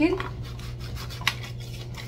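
Rubbing and scraping of a round cutter and hands pressing through chilled puff pastry on a parchment-lined baking tray, with a few light clicks as the cutter is handled.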